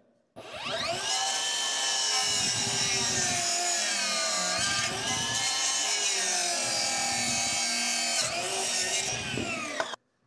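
Cordless Makita circular saw with a Diablo blade spinning up and cutting through a two-by-four. Its motor whine sags and recovers several times as the blade bites. It runs free again near the end, then winds down.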